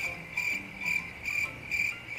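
Cricket-chirp sound effect: a steady high trill pulsing about twice a second, stopping just after the end. It is the comic 'awkward silence' cue, added in editing.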